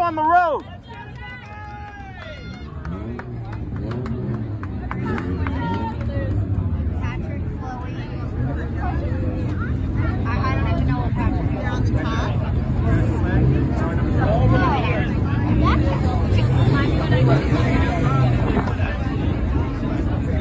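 Crowd chatter in the grandstand over the low, steady drone of the enduro field's four- and six-cylinder car engines. The drone grows louder over the first half.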